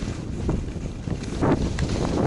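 Wind buffeting the microphone of a skier's camera on a fast run, with the hiss of skis sliding and scraping over packed snow, growing louder about three-quarters of the way through.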